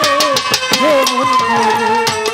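Instrumental passage of a Bengali baul song: a violin plays the melody in long held notes over a hand drum keeping a steady beat, its low strokes sliding in pitch.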